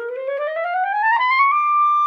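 Clarinet playing a fast rising run of notes up through its range and settling on a held high note about one and a half seconds in. The run tests whether a new mouthpiece responds evenly from the bottom of the range to the top.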